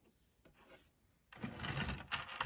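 Handling noise on a Cobi plastic-brick model tank: a few faint clicks, then from about two-thirds in a rough rattling scrape as a hand moves over the plastic bricks.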